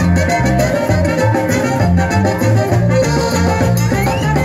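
Live band playing upbeat Latin dance music, an instrumental passage with a steady repeating bass line and no singing.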